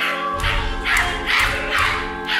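Live stage music: a held chord under regular harsh, breathy vocal bursts about every half second, with low drum beats coming in shortly after the start.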